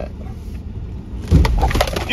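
Ford F-150 pickup hitting a big pothole on a sand road, heard from inside the cab. Low road rumble gives way, about a second and a half in, to a sudden heavy jolt, followed by rattling and clattering.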